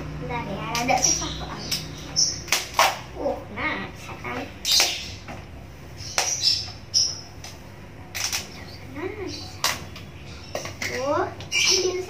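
Plastic bowls and containers knocking and clattering as they are handled on a counter, in irregular sharp clicks, with a child's short wordless vocal sounds between them.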